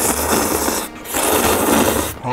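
A person slurping instant noodles (spicy curry ramen) from a bowl in two long slurps, with a brief break about a second in.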